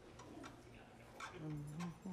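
Faint scattered clicks and light taps, with a short, low murmur of a man's voice in the second half.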